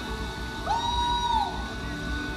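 A live R&B band plays with a steady bass pulse. Just under a second in, one high held note swoops up, holds for about a second and falls away.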